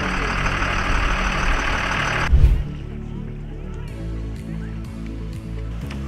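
A 4x4 tour bus running: a rushing hiss over a low rumble that ends in a heavy thump a little over two seconds in. After that, background music alone with steady low chords.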